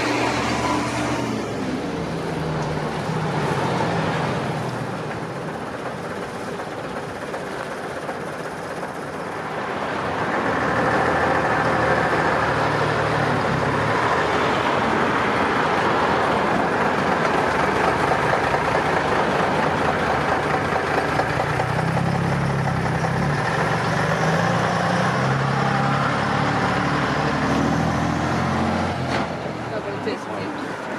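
Vintage Leyland double-decker bus's diesel engine running as the bus drives along and turns in towards the listener. It dips a little, then grows louder about a third of the way in and holds there.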